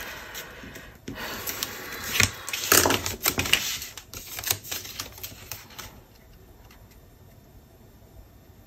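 Cardstock being scored with a stylus along a ruler, then folded and creased by hand: scraping strokes, crisp paper rustling and clicks, which stop about six seconds in.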